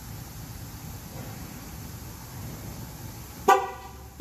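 2012 GMC Yukon XL's horn giving one short chirp near the end, over a low steady background hum: the truck's confirmation that TPMS learn mode has been entered.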